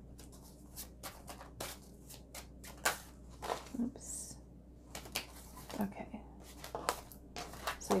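Tarot cards being handled: cards slid off the deck, fanned and laid down on the table, giving a run of sharp card snaps and taps, with a brief sliding hiss about four seconds in.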